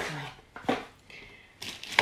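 A short, sharp sound about a third of the way in, then a brief crinkle of clear plastic packaging being handled near the end, ending in a sharp click.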